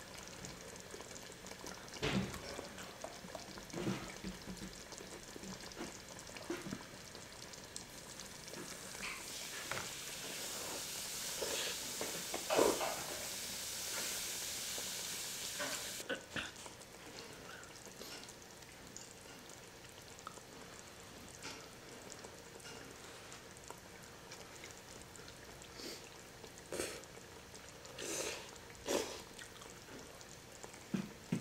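Food sizzling in a frying pan in the background, a steady hiss that swells and then cuts off suddenly about halfway through. Under it come scattered clicks of chopsticks against bowls and pot and the slurps and chewing of people eating hot pot.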